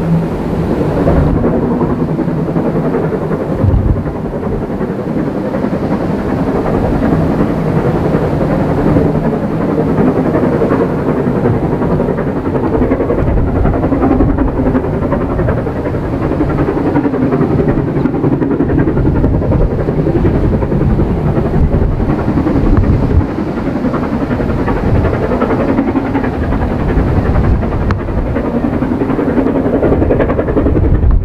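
The steam locomotive LMS 6233 Duchess of Sutherland, a four-cylinder Princess Coronation Pacific, working hard with a heavy train. Its exhaust comes as a continuous rumble, without separate beats, over wind on the microphone. A faint steady low hum runs under it in places.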